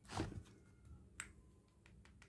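Faint, sharp clicks of calculator buttons being pressed: one clear click about a second in and a few fainter ones, after a brief noise at the start.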